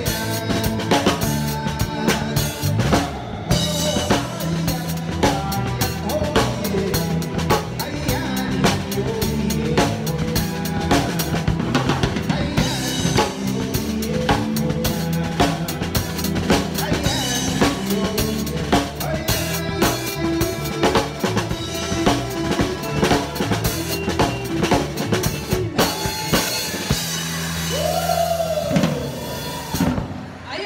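Live band music led by a drum kit played close up, with snare, bass drum and cymbal strikes over bass guitar and the band's sustained notes. The drumming thins out near the end as the song winds down.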